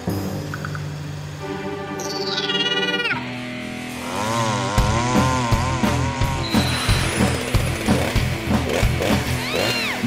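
Cartoon background music with sound effects: a falling whistle-like glide about two seconds in, then a wavering cartoon chainsaw buzz through the second half.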